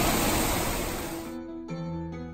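Rushing water of the Banias spring stream, a headwater of the Jordan River running high after heavy rain. It cuts off abruptly after about a second and a half, replaced by quieter keyboard music with held notes.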